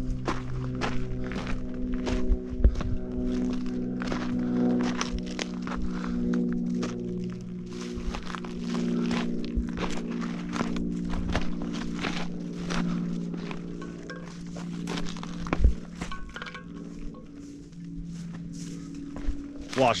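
Footsteps on a rocky dirt trail, a run of irregular scuffs and knocks, over steady droning music.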